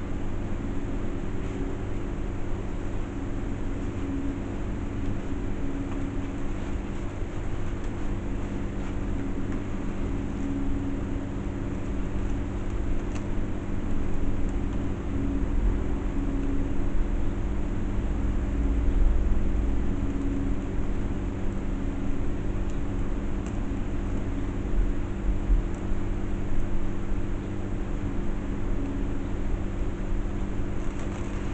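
A steady mechanical hum: several low, even tones held over a hiss, with a deeper rumble that swells around the middle.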